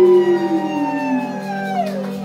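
Live rock band holding a sustained chord at the close of a song, with one note sliding slowly downward in pitch over steady lower notes. There are no drums.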